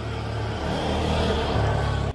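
A motor vehicle's engine running nearby, a steady low hum that grows gradually louder.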